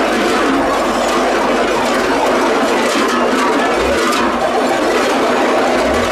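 Hundreds of cowbells hung on a moving parade float clanging and jangling together in a dense, steady, loud din.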